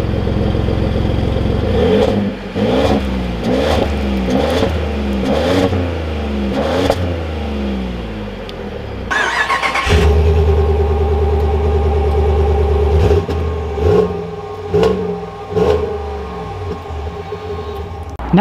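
Pickup truck engines heard from the exhaust at ground level, one truck after the other. The first is blipped in a run of quick revs. Then the second idles with a deep steady note and is revved in several short blips.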